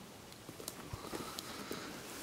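Faint handling noise of a cardboard CD box set being held and shifted in the hands: a few light taps and rustles, one sharper tap about a second in.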